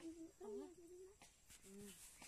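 A person's voice talking quietly in short phrases, some syllables held on a level pitch, with brief pauses between them.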